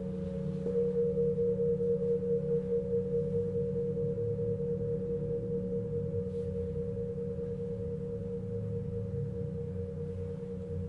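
Several Tibetan singing bowls ring together in long sustained tones, one low and a couple mid-pitched. Just under a second in, a bowl is struck and its tone swells and wavers in a pulsing beat, then slowly fades.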